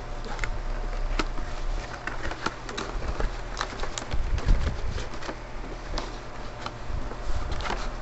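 Plastic and cardboard packaging of a Pokémon TCG collection box being handled and opened, with irregular small clicks and crackles throughout, over a steady low hum.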